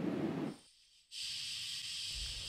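Faint, steady hiss with no distinct event. About half a second in it drops to dead silence for roughly half a second, then resumes as an even, high-pitched hiss.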